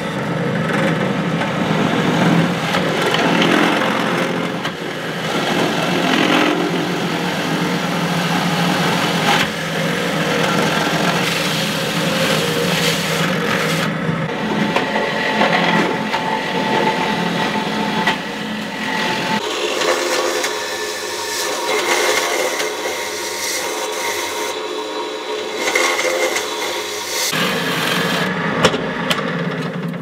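Benchtop pillar drill running, its stepped drill bit cutting holes through the thin steel wall of a beer can, with a steady motor hum under scraping and grinding. The deep hum drops away for several seconds about two-thirds through, then returns.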